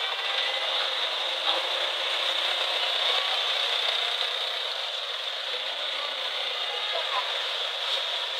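Steady hiss of background noise, with a faint wavering voice underneath in the middle of the stretch.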